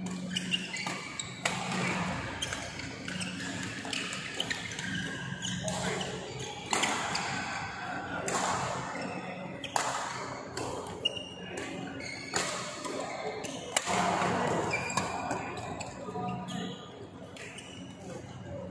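Badminton rackets striking the shuttlecock in a doubles rally, a string of sharp smacks at irregular intervals, echoing in a large hall with voices in the background.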